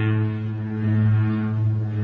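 A single low droning note with many overtones, held steady, as part of the film's music score.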